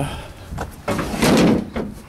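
Hood of a Craftsman riding mower being handled and swung shut: a few light clicks, then a short noisy rush about a second in that lasts under a second.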